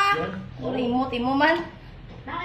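Speech: a person talking, with a faint steady low hum underneath.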